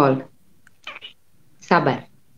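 Two short, high-pitched, meow-like vocal calls, each falling in pitch, one at the start and one near the end, with a short breathy sound between them.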